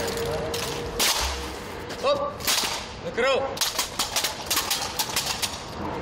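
Rifle drill: hands slapping and gripping wooden-stocked rifles and the rifles being clacked into position by a squad in unison. The sharp clacks come in quick clusters throughout, with a short shouted call or two between them.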